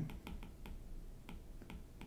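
Faint, irregular clicks of a pen tip tapping on a writing surface as a word is written, a few clicks a second.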